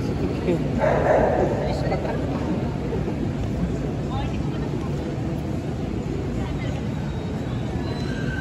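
Crowd murmur and general noise in a large hall, with a short louder burst about a second in.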